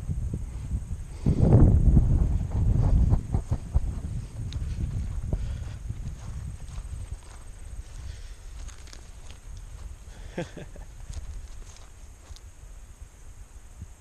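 Footsteps and handling knocks from a camera held in the hand while walking along a grass trail, with wind rumbling on the microphone strongly in the first few seconds and then dying away.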